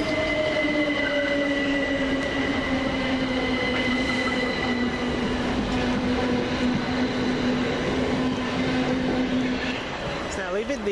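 Class 387 electric multiple unit pulling out of the platform: a steady electric whine, slowly falling in pitch, over the rumble of its wheels on the rails. It cuts off near the end.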